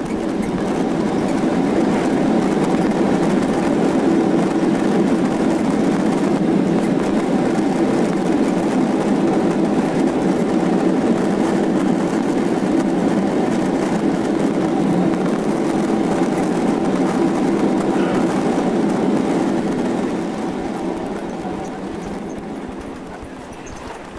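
Boeing 767 in its landing rollout, heard from the passenger cabin: loud, steady engine and runway noise that swells at the start and dies down about 20 seconds in as the jet slows.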